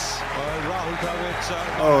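Speech from the cricket broadcast being reacted to: a commentator's voice over a steady background hiss and hum, with a man saying "Oh" near the end.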